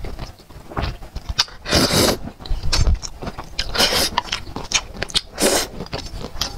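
Close-miked eating of saucy black-bean noodles: several loud slurps of noodles, the biggest about two seconds in and another near four seconds, with wet chewing and mouth clicks between.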